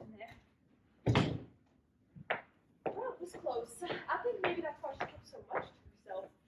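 A stage-set door swinging shut with a single thump about a second in, followed by voices talking.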